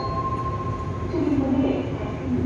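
Daegu Metro Line 1 train heard from inside the car: a steady running rumble with a thin electric motor whine that drops out about halfway through, followed by shifting lower tones.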